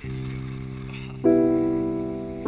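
Background piano music: a low note struck at the start, with a chord joining about a second in, both held and slowly fading.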